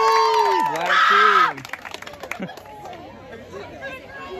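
A group of teenagers cheering and yelling with long drawn-out shouts, loud for about the first second and a half, then suddenly dropping to the chatter of a crowd.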